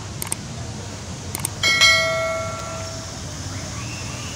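Two quick double mouse clicks, then a single bell chime about two seconds in that rings on and fades over a second or so, the click-and-ding of a subscribe-button overlay, over steady outdoor background noise.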